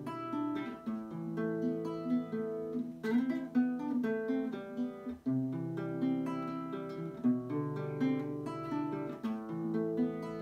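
Nylon-string classical guitar played fingerstyle: a steady run of picked arpeggio notes over held bass notes, with a brief drop in level about halfway through.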